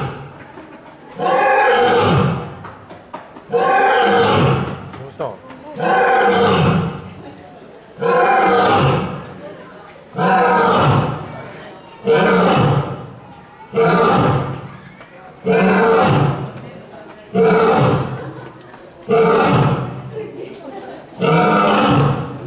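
A lioness roaring: a long series of loud calls, about one every two seconds, each lasting about a second, coming a little faster toward the end.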